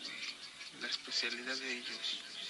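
A person's voice in a recorded voice message played back over the sound system, indistinct and quieter than the announcer's speech.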